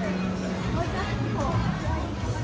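People talking at close range over background music with a steady bass line, with the chatter of a busy outdoor restaurant around them.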